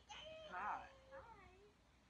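A faint, drawn-out wordless vocal call that slides up and down in pitch, meow-like, loudest about half a second in and trailing off.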